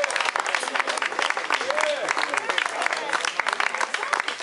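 Audience applauding, a dense patter of many hands clapping, with a few voices calling out over it.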